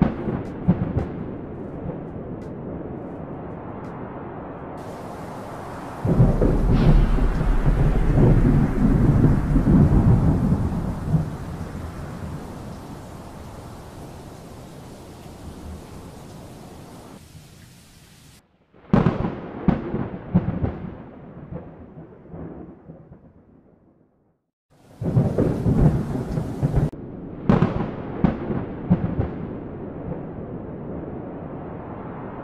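Thunderstorm: rain with rolling thunder. A loud, deep thunder rumble breaks about six seconds in and dies away slowly over the next ten seconds or so; after a short break there are more crackling peals, a brief silence, and another loud peal about 25 seconds in.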